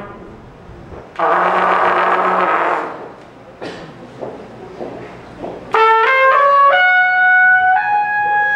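Trumpet in free-jazz improvisation: a loud, breathy, buzzing held tone for about a second and a half, then a few short breathy sputters, then from near six seconds a run of clear, sustained notes stepping up and down.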